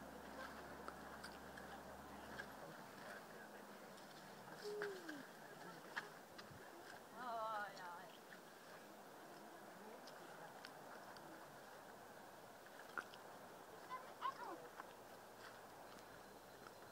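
Quiet outdoor ambience: a faint steady hiss with scattered small clicks, and now and then brief faint voices in the distance.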